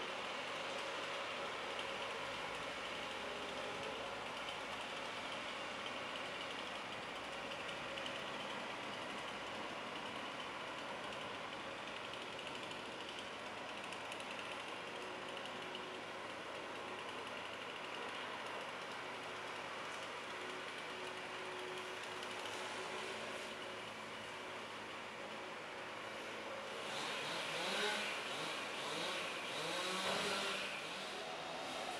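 Heavy machinery engines, from the wheeled excavator and crane truck at work, running steadily. A louder sound with a rising pitch comes in near the end.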